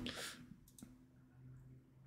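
Near silence: a faint breath fading out at the start, one faint click just under a second in, and a low faint hum.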